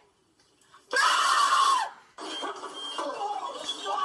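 A loud, harsh cry lasting about a second, starting about a second in and falling away at its end, followed by quieter talking.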